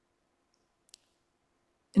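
Near silence in a pause between sentences, broken by one faint, very short click about a second in.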